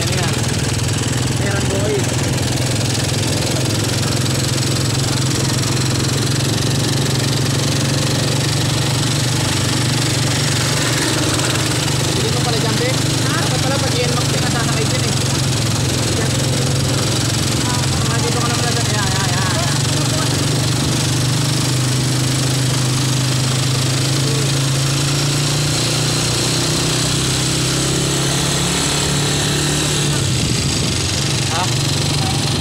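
Steady drone of a small engine running under load as it drives a flat-bed lift carrying a motorcycle through floodwater.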